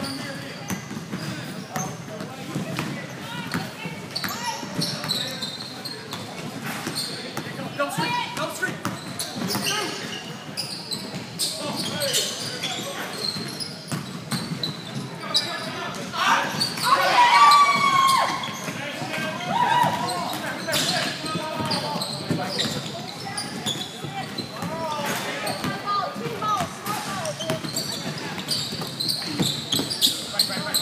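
A basketball bouncing on a hardwood gym court during a game, with players and spectators talking and calling out in a large, echoing hall. The loudest stretch comes a little past halfway, with a burst of high, bending sounds over the court noise.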